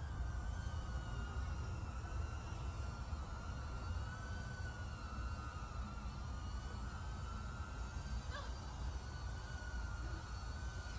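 Emax Tinyhawk 3 micro FPV drone flying, its motors and propellers giving a steady high whine that wavers gently in pitch as the throttle changes. Wind rumbles on the microphone underneath.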